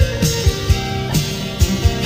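Telecaster-style electric guitar playing an instrumental passage of a country-rock song, with held notes over a steady low beat of about two thumps a second.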